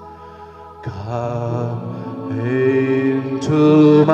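A priest's voice singing a slow devotional hymn in long, held notes over sustained background music. It starts soft and gets louder about a second in, swelling further near the end.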